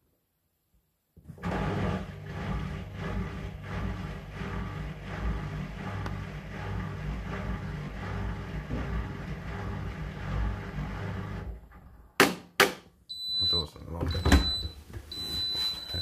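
Hotpoint washing machine running with a low, steady hum at the end of its cycle for about ten seconds, then stopping. Two sharp clicks follow, then a few high beeps and a thud as the door is opened.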